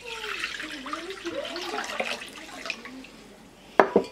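Water poured from a glass pitcher into a large ceramic bowl, splashing and gurgling for about three seconds before it tails off. Near the end, a single sharp knock as the glass pitcher is set down on the wooden counter.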